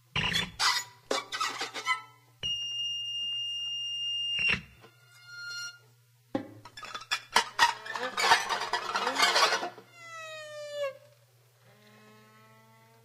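Free-improvised music from a small ensemble of saxophones, strings and electronics, with scattered plucked and struck attacks and a high pitched tone held for about two seconds. This is followed by a dense clattering flurry and a slide falling in pitch near the end, over a steady low hum.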